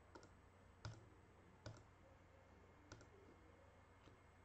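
Near silence with about four faint, short clicks spread over a few seconds, the one about a second in the clearest.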